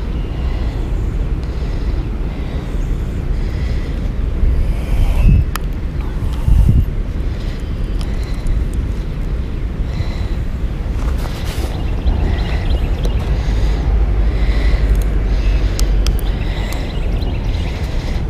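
Wind buffeting an action camera's microphone: a steady low rumble, with two brief knocks about five and seven seconds in.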